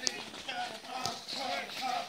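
Men's voices calling out in short phrases, with two sharp clicks, one at the start and one about a second in.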